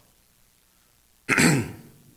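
A man clears his throat once, a short rough burst just past the middle of an otherwise quiet stretch.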